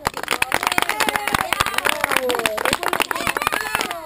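A small group clapping, quick irregular claps throughout, with voices calling out over the clapping.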